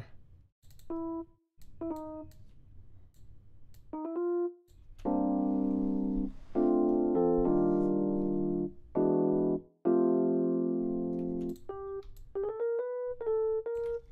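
A software keyboard instrument in a DAW sounding short single notes, then several sustained chords of stacked notes, then short single notes again. These are chord voicings being auditioned as notes are added to them. Faint clicks are heard between the notes.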